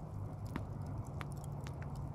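Glowing wood embers crackling, with four sharp pops in quick succession over a low steady rumble.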